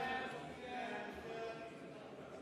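Indistinct murmur of many voices talking at once in a large chamber, with no single speaker standing out, easing off slightly toward the end.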